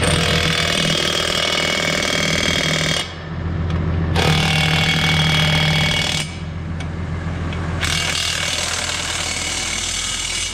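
Cordless impact wrench hammering on the wheel nuts of a tractor's rear hub in three runs of about two to three seconds each, with short pauses between them. A low steady engine hum runs underneath.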